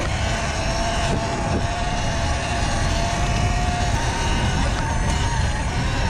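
Sur Ron electric dirt bike's motor giving a steady whine while riding across grass, under a heavy rumble of wind on the microphone.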